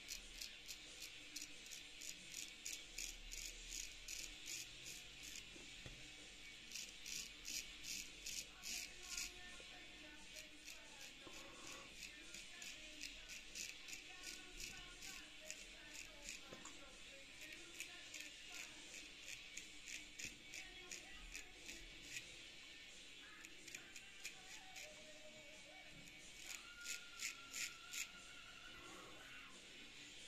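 Straight razor scraping through lathered stubble in quick short strokes, a rhythmic rasp of about four strokes a second that comes in runs, loudest about seven seconds in and again near the end.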